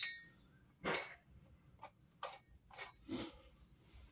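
A few faint, short clicks and rustles, spaced out and separated by quiet, from gear-lever parts being handled and set in place by hand.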